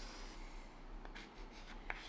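Faint chalk scratching on a blackboard as a horizontal line is drawn and a label is written, with a few short strokes and a small tap near the end.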